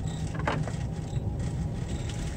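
Steady low rumble of a moving passenger train heard from inside the carriage, with a brief higher sound about half a second in.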